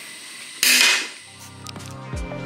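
A short, loud burst of noise about half a second in, lasting under half a second, with no clear pitch. After it, background music comes in quietly.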